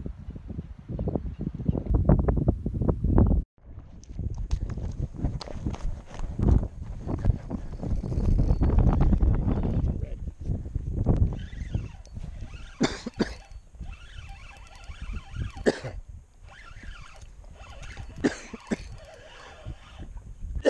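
Gusty wind buffeting the microphone, a heavy rumble that briefly cuts out about three and a half seconds in, then eases in the second half, with scattered clicks and knocks from handling the rod and reel.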